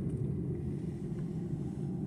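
Steady low road and engine rumble heard from inside a moving car's cabin.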